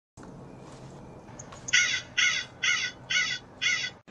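A corvid cawing five times in quick succession, about two harsh caws a second, starting a little under two seconds in over a faint steady hiss.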